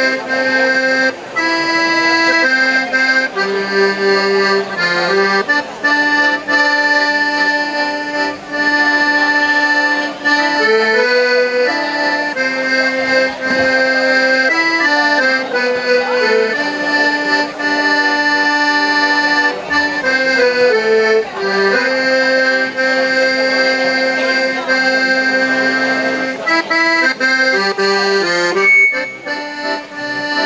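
Piano accordion playing a traditional tune solo: a melody of changing notes over long held lower notes.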